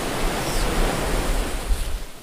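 Steady wash of ocean waves, cutting off abruptly at the end.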